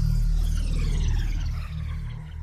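Synthesized logo-intro sound design: a deep, steady low drone under a many-toned synth sweep that glides steadily downward in pitch.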